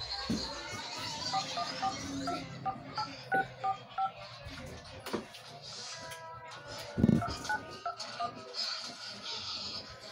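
Phone keypad tones as numbers are tapped in on a smartphone: a run of about a dozen short two-note beeps, a pause, then a few more. A single thump comes about seven seconds in.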